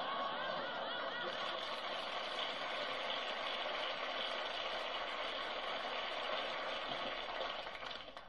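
Studio audience laughing and applauding at a punchline, a steady wash of sound that eases off near the end.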